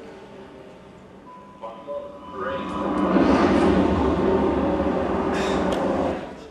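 Film soundtrack played over a lecture hall's speakers: quiet cockpit voices, then a loud rushing roar of the airliner flying low over the city from about two and a half seconds in, fading away near the end.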